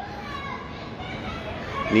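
Faint distant voices over a steady hum of outdoor background noise, with no close voice.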